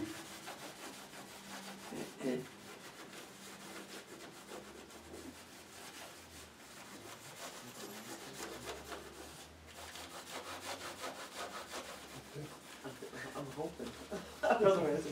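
A paintbrush scrubbing paint onto paper in rapid, repeated strokes.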